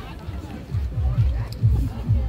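Background music with a steady, low-pitched beat, about four beats a second, under the chatter of a waiting crowd.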